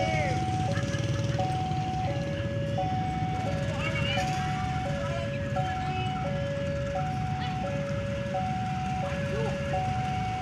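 Railway level-crossing warning alarm sounding its electronic two-tone signal: a higher and a lower tone alternate about every 0.7 seconds, warning of an approaching train. A low rumble of engines runs underneath.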